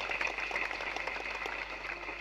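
Audience applause: many hands clapping in a dense, even patter, fainter than the speech on either side.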